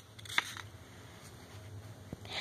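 Quiet handling noise: a single short click about half a second in, then faint rustling over a low steady hum.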